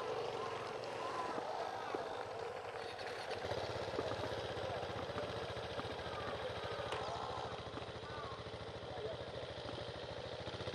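An off-road motorcycle engine idling nearby, a low, even putter that starts about three and a half seconds in and runs on steadily. Faint voices carry in the background.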